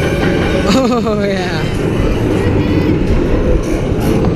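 Mako roller coaster train being hauled up its chain lift hill: a steady low rumble and rattle from the lift and track.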